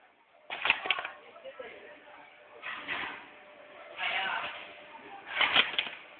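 Double-sided inner-wire stripping machine for HDMI cable working through its strokes. Each cycle is a short noisy clatter of clicks, heard four times, with the loudest about half a second in and near the end.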